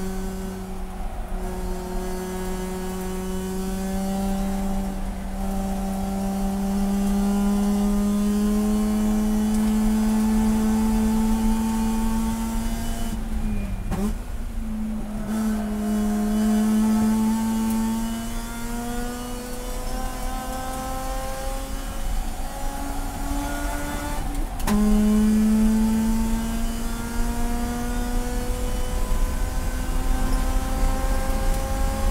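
Race car engine heard from inside the cockpit, pulling hard with its pitch climbing slowly. About halfway through it eases off for a corner, the pitch dipping and recovering. Near the end an upshift drops the pitch sharply, then it climbs again, louder.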